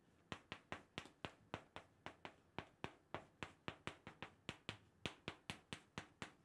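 Chalk writing kanji on a blackboard: a rapid run of short, sharp taps and clicks, about four or five a second, as each stroke hits the board, with a few brief pauses between characters.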